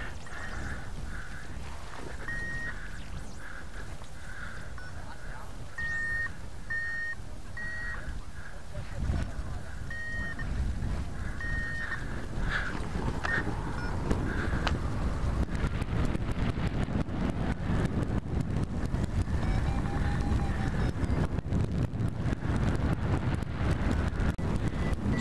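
Wind rushing over the microphone, louder from about nine seconds in and stronger still in the second half as the hang glider takes off and gathers airspeed. A flight variometer gives several short high beeps in the first half.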